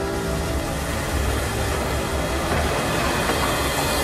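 Dense rumbling and clattering noise, steady and building slightly in loudness, like a train passing.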